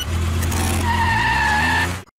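Tyre-screech sound effect from a car-themed intro animation, digitally distorted, over a steady low drone. About a second in, a high squealing tone sets in and slides slightly down in pitch, then cuts off suddenly at the end.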